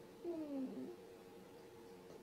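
A short whining vocal sound, about half a second long and falling in pitch, over a faint steady hum.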